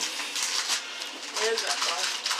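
Wrapping paper and gift packaging rustling and crinkling as presents are handled and unwrapped, with a brief soft voice sound about one and a half seconds in.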